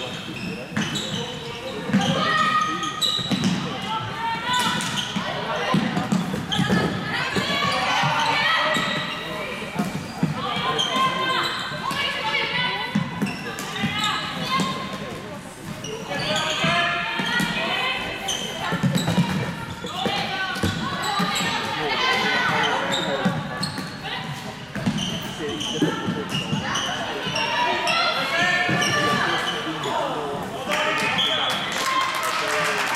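Floorball game in a sports hall: voices of players and spectators calling and talking, echoing in the hall, over a scatter of sharp clacks from the plastic sticks and ball and footfalls on the court.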